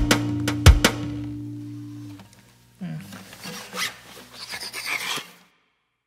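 The song's last acoustic-guitar strums, with a final chord ringing out and fading away over about two seconds. After a short gap, a rough, scratchy rubbing sound lasts about two and a half seconds and then stops.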